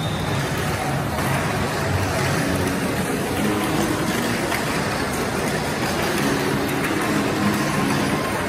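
Tamiya Mini 4WD cars running on a plastic multi-lane track: a steady whirring and rattling that holds at one level throughout.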